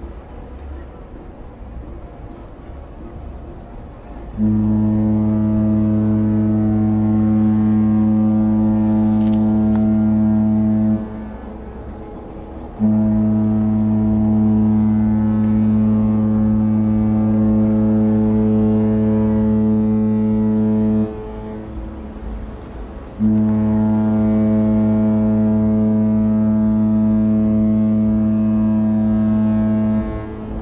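Cruise ship Mein Schiff 2's horn sounding three long, deep, steady blasts as the ship leaves its berth, the first starting about four seconds in, each lasting seven seconds or so with short pauses between.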